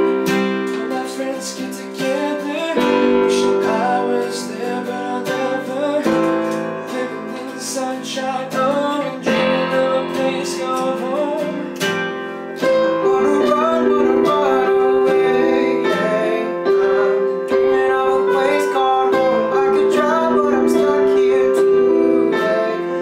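A pop song played on strummed acoustic guitar and a Roland RD-300NX digital stage piano, with young male voices singing the melody over the chords.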